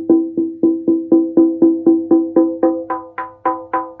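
Conga drumhead struck repeatedly with a felt-headed mallet, about four even strokes a second, each ringing briefly with a clear pitch. The strike point moves across the head between centre and edge to show that the pitch changes with position, and the strokes ring brightest about three to four seconds in.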